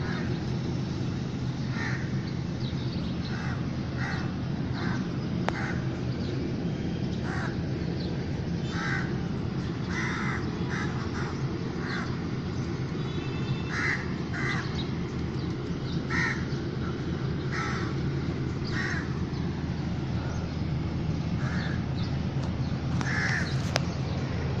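Birds calling outdoors in short, separate calls, one every second or so, over a steady low background rumble.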